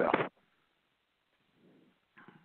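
A man's speaking voice finishing a word, then near silence for the rest of the pause.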